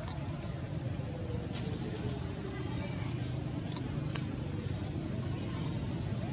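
Outdoor background noise: a steady low rumble like distant road traffic, with faint indistinct voices and a few light clicks.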